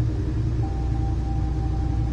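Steady low road rumble inside a moving car's cabin.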